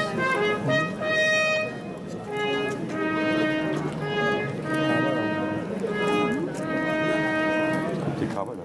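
A military band trumpeter blowing the announcement signal that opens the ceremony: long held notes in about four phrases with short breaks between them. Faint voices murmur underneath.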